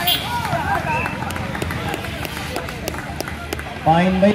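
Players and onlookers calling out during a volleyball rally, with a few sharp slaps of hands striking the ball.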